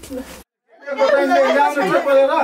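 Several people talking over one another, broken by a brief dead silence about half a second in.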